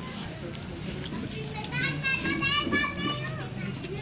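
Indistinct voices in the background, with one high-pitched, wavering voice, like a child's, calling out for about a second and a half in the middle.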